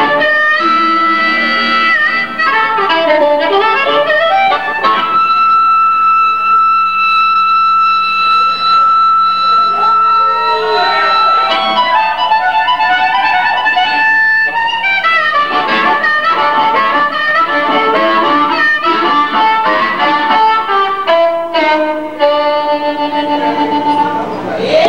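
Live blues harmonica solo. One long held note lasts from about five to eleven seconds in and slides into bent notes. Quick runs of notes follow, and it ends on another held note near the end.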